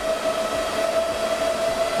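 HPE DL560 Gen10 server's cooling fans spinning fast under full four-CPU load, a loud, steady whine over a rush of air.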